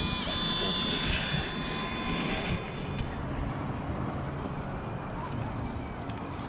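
Electric motor and gear drive of a 1/10 scale RC rock crawler whining at high pitch as it climbs out of a muddy puddle; the whine cuts off about three seconds in, after which it is fainter and farther away.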